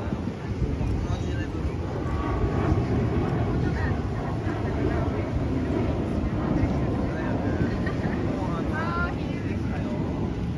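Outdoor street ambience: a steady low rumble with faint voices in the background.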